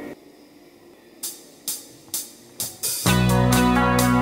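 Electric guitar played through the BOSS ME-70 on its clean amp tone with chorus: a few faint ticks about half a second apart, then a loud ringing chord strikes about three seconds in and sustains.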